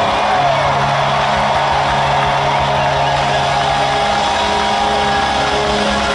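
Live rock band at loud arena volume, electric guitars and bass holding long sustained notes, heard from the audience.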